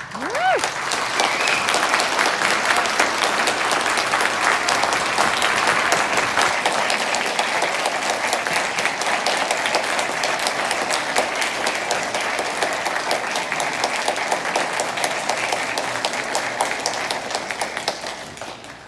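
Audience applause in an auditorium, with a rising whoop as it begins, fading out near the end.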